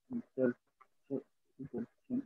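A man's halting speech, broken into short separate syllables ("el... el...") with silent gaps between them, as he searches for a word.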